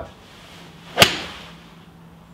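A golf iron strikes a ball off an artificial turf hitting mat, one sharp crack about a second in with a short ring-out in the small room.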